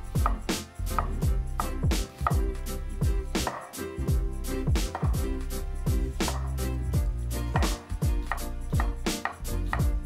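Chef's knife slicing an onion thinly on a wooden cutting board: a continuous run of knife taps against the board, several a second, over background music with a steady bass line.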